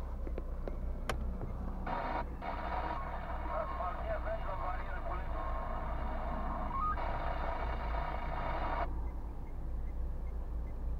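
A low, steady rumble inside a car standing in traffic. From about two seconds in until near the end, a thin, tinny voice plays from a small loudspeaker, as from a car radio, and cuts off abruptly.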